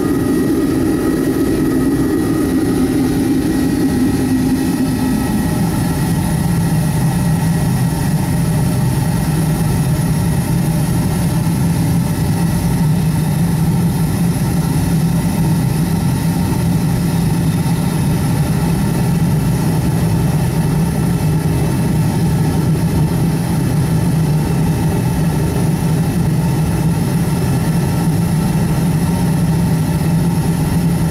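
Home-built oil-fired foundry furnace running on jet A fuel, the burner and its blower giving a steady roar while the fuel mixture is being tuned. About five seconds in, the roar drops to a lower pitch as the lid closes over the furnace.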